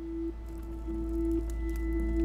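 Background music: a sustained drone on one steady held note over a deep rumble, slowly swelling in loudness.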